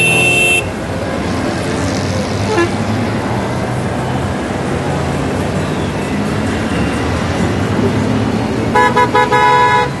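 A procession of Honda Gold Wing touring motorcycles passing with a steady engine rumble. A horn sounds right at the start for about half a second, and a run of short horn toots sounds about nine seconds in.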